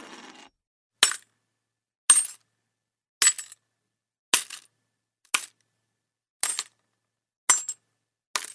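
A coin-drop sound effect, a sharp metallic clink with a brief bounce, repeating seven times about once a second with silence in between.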